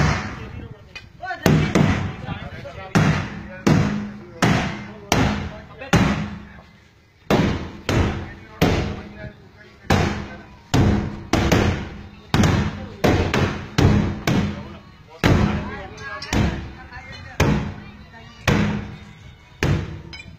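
A water tank struck hard again and again, in a strength test. There are about one or two heavy blows a second at an uneven pace, and each leaves a short, low ringing that dies away.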